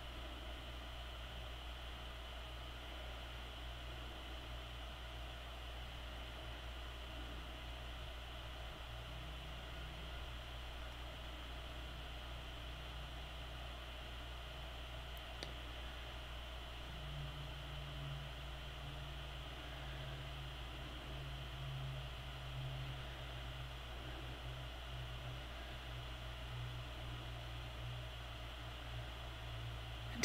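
Faint steady hiss with a low electrical hum: room tone, with a single faint click about halfway through.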